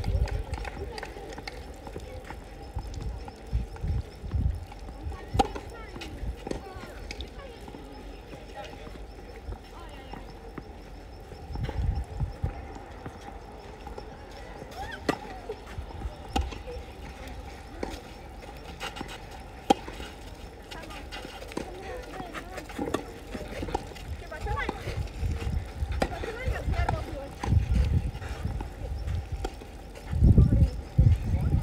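Open-air ambience at a clay tennis court between points: indistinct distant voices, a few isolated sharp taps, and bouts of low rumble from wind on the microphone.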